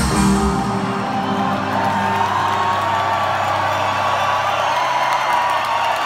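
A live band's closing chord ringing out over a held low note that dies away near the end, with a large crowd cheering and whooping over it.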